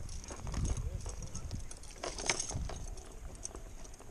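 Close handling sounds as a crappie is unhooked over a mesh fish basket: scattered clicks and knocks, the loudest about two seconds in, over a low rumble.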